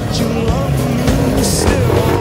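Dirt bike engines revving as riders push through a shallow river crossing, mixed under background music with a steady beat of about two strokes a second.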